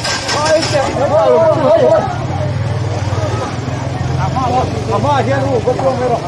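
People's voices over a steady low engine hum.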